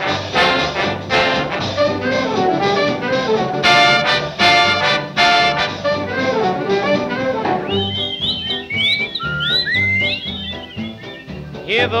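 Swing band intro with the brass section playing punchy ensemble hits. About eight seconds in the horns drop back, and high chirping whistles imitating birdsong glide over the rhythm section.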